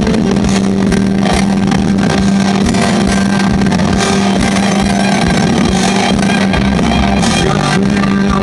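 A rock band playing loudly on stage: electric bass and a semi-hollow electric guitar through Orange amplifiers, with the full band, and a strong held low bass note under it.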